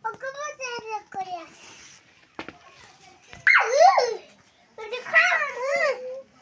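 Goat kids bleating: several high, quavering calls, the loudest about three and a half seconds in and again near the end, with a few faint knocks between them.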